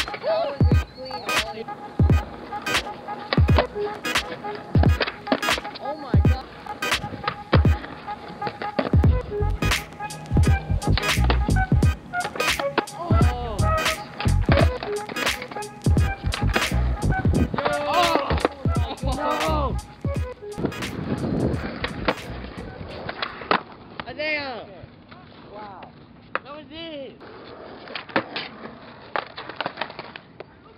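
Skateboard on concrete, with wheels rolling and the sharp clacks of pops and landings, under a music track with a steady beat and vocals. The beat and vocals drop away about two-thirds of the way through, leaving quieter board noise and a few scattered clacks.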